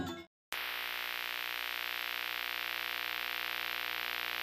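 Balinese gamelan music fades out at the very start; after a brief silence a steady, hissy synthesizer drone with many held tones sets in and runs on unchanged.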